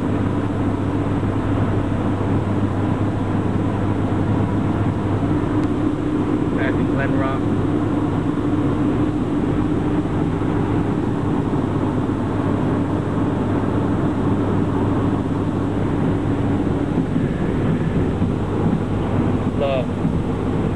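Steady engine drone and road noise inside a moving 1998 Honda Civic hatchback's cabin, with no change in pace.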